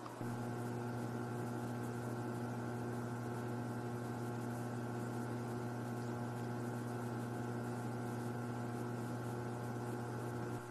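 Steady low electrical hum with a few fainter higher tones over a light hiss, starting abruptly just after the start.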